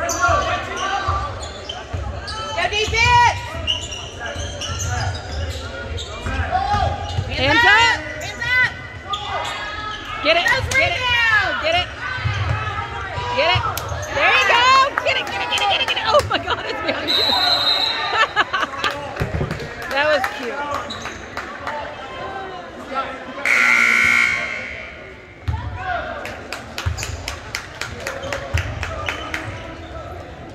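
Indoor basketball game: sneakers squeaking on the hardwood gym floor and the ball bouncing, with spectators' voices. A referee's whistle sounds a little after halfway, and a loud gym horn blares for about a second and a half later on.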